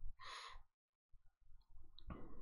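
A short breath out into a close microphone, then near silence.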